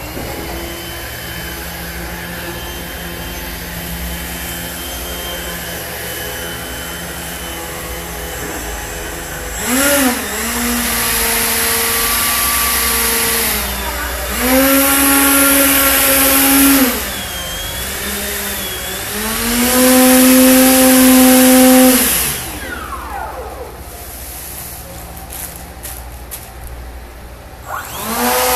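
Small electric ducted fan running at a steady low hum, then throttled up three times, each burst held for two to three seconds with a whine and a rush of air before dropping back. It winds down with a falling whine near the end.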